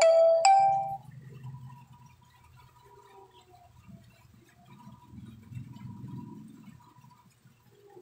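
Phone alarm or reminder ringtone: quick repeating marimba-like notes that cut off about a second in. Faint low, muffled background sound follows.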